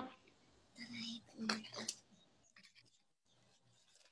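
Mostly quiet video-call audio with a few faint, brief voice sounds about one to two seconds in, followed by a few soft clicks.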